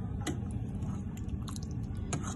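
A metal ladle clicking against a steel pot of fish stew as it is dished out, a few light clicks over a steady low hum.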